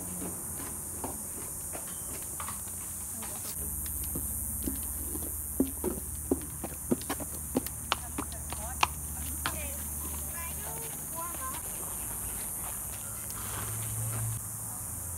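A horse's hooves clip-clopping on brick paving as it is led at a walk, a run of about nine sharp clops starting about five and a half seconds in.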